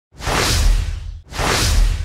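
Two whoosh sound effects from a news intro, one after the other, each swelling up and fading over about a second, with a deep low rumble under each.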